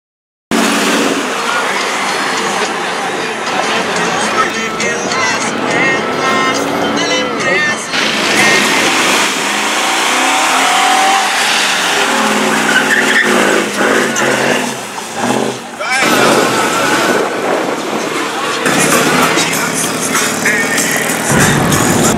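A car doing a burnout, its tyres squealing against the pavement under a revving engine, with crowd voices and shouting. The sound starts suddenly about half a second in and changes abruptly several times.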